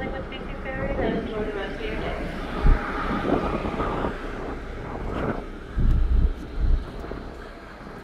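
Wind buffeting the microphone in several sudden gusts over the ferry's steady low rumble on the open deck, with indistinct voices of people talking in the first half.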